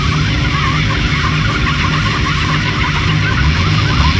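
Lo-fi black metal-punk recording in an instrumental stretch: a steady, dense wall of distorted guitar and bass with no vocals.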